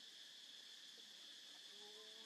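Faint insect chorus from crickets or similar insects: a steady, even high-pitched buzz.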